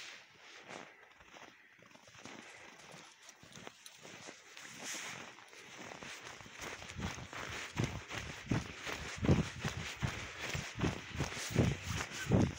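Footsteps crunching in snow, faint at first, then growing louder and settling into a steady pace of about two steps a second in the second half.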